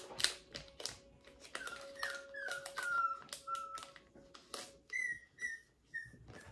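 Maltese puppy whimpering: a string of short, high, falling whines from about a second and a half in, then two more near the end, over light clicks of cards and packs being handled.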